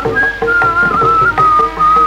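Bamboo flute playing a high melody in long held notes with small pitch slides, stepping down near the end. It is accompanied by light hand-drum strokes and a steady lower tone.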